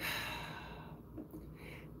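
A man's soft sigh: a breathy exhale that starts suddenly and fades away over about a second, followed by a few faint mouth and breath noises.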